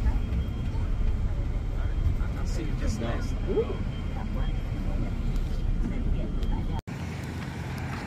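Bus engine and road rumble heard from inside the passenger cabin, a steady low drone, with faint voices over it. It cuts off abruptly near the end and gives way to a quieter outdoor rumble.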